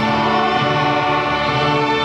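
Large student string orchestra of violins, violas, cellos and double basses playing together in long, sustained chords.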